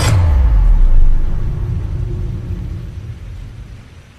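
Deep rumbling boom of an intro logo sound effect. It hits as the screen flashes white, swells for about a second, then fades away over the next three seconds.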